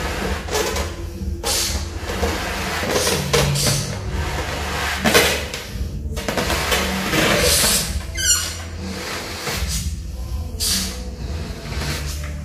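A clear latex balloon being blown up by mouth: about half a dozen long puffs of breath pushed into it, with short pauses for breath between them. A brief squeak comes a little after eight seconds.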